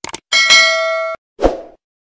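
Subscribe-button animation sound effects: a quick double mouse click, then a bright bell ding that cuts off abruptly after under a second, then a short low thump.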